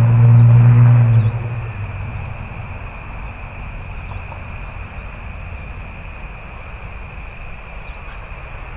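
A motor hums steadily and cuts off suddenly about a second in. After that there is a low, even rumble with a faint steady high-pitched whine over it.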